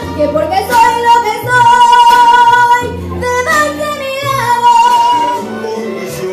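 A woman singing a Spanish-language song into a microphone over a karaoke backing track, holding long notes over a stepping bass line.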